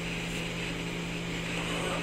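Steady low hum with a faint hiss of room background noise, unchanging and without any distinct event.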